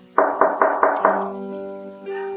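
Knuckles knocking on a wooden door: five quick raps in about a second. Background music plays underneath.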